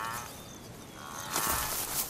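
A wildebeest bleating in distress as cheetahs hold it down: a short wavering call at the start, then a longer, louder one from about a second in, with a burst of noise under it.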